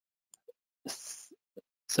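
Small mouth sounds from a presenter on a close microphone between phrases: a few faint lip clicks and a short breath about a second in.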